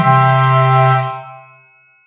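Closing chord of flute, oboe, clarinet and bass clarinet, with a carraca (ratchet) rattling under it. The chord is held for about a second, then fades out.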